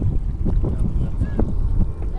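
Wind buffeting the microphone in a steady low rumble, over water moving past a small sailboat's hull.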